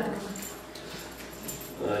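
Speech handover: a woman's voice trails off at the end of a spoken thank-you, then a short pause with faint room noise, then a man starts speaking with a hesitant "uh" just before the end.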